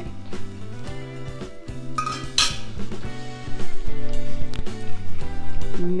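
A metal ladle clinking against a stainless steel pot as pasta cooking water is added to spaghetti in tomato sauce, with one louder clatter a little past two seconds in. Background music plays throughout and grows louder in the second half.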